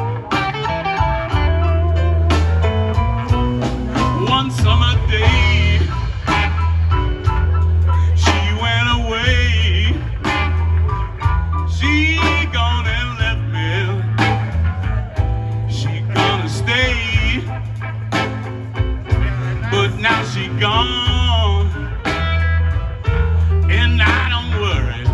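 A live electric blues band playing: electric guitars, bass guitar and drums, with a singer on microphone.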